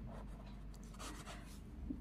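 Faint scratching of a pen on paper as a word is handwritten, in a few short strokes.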